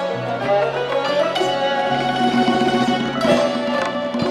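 Persian classical instrumental ensemble: kamancheh bowing long held notes over rapidly plucked long-necked lutes in tremolo.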